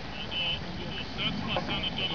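Small birds chirping repeatedly in short high notes over a low background murmur.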